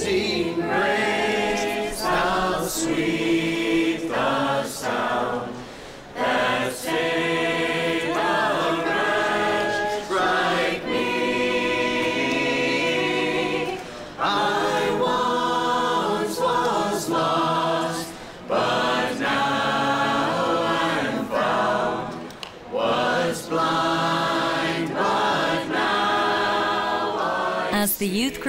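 A group of teenagers singing a church song together, unaccompanied, with short breaks between phrases.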